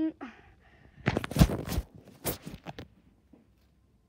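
Loud rustling and knocking handling noise, from the vest and the phone being moved, lasting about two seconds from about a second in.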